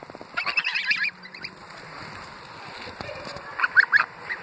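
Greylag geese calling at close range: a quick run of short, high cackling notes about a third of a second in, then a few loud short honks near the end.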